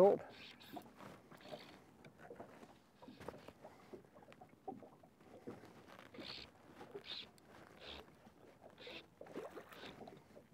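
Faint, intermittent water splashes, several about a second apart in the second half, from a hooked trout played at the surface beside a boat.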